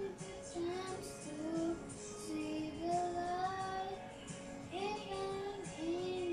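A child singing a slow song along with a karaoke backing track, holding long notes that glide between pitches.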